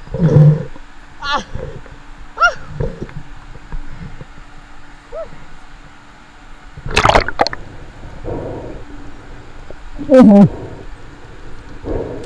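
Water sloshing and splashing around a spearfisher floating at the sea surface between dives, with short breathy and voice-like sounds and a louder splash-like burst about seven seconds in.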